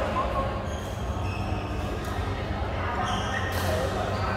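Badminton rally: shoes squeaking on the court mat and a sharp racket hit on the shuttlecock near the end, over a steady low hum and voices in a large hall.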